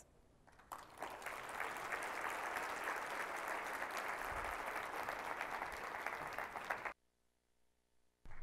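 Audience applauding, starting about a second in and cutting off suddenly near the end.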